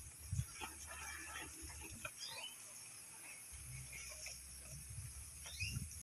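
Goats feeding on leafy forage: faint crunching, chewing and rustling of leaves as they pull at the pile, with scattered small crackles and a few soft knocks. Two short, high falling chirps sound, one near the middle and one near the end.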